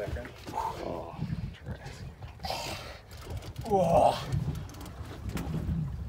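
A man's short, strained groans and exclamations as he holds a big fish on a heavily bent rod, the loudest about four seconds in, over a steady low rumble.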